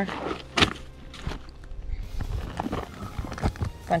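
A canvas drawstring collecting bag being pulled open and handled, the cloth rustling and the rocks inside knocking together in short clicks, the sharpest about half a second in, over quiet background music.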